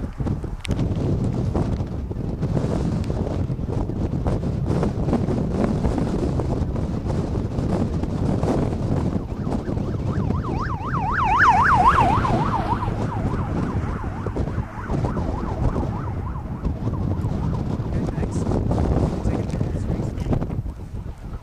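Strong wind buffeting and rumbling on a camcorder microphone. About ten seconds in, a siren warbles rapidly up and down, several swings a second, for about two seconds and then fades under the wind.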